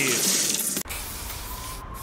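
Aerosol spray-paint can hissing: a steady hiss, briefly broken a little under a second in, then continuing evenly.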